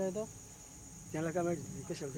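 Steady high-pitched insect drone, with people talking over it.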